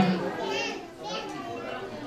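Background chatter of children's voices, fainter than the main talk, with short high-pitched utterances about half a second in and again just after a second.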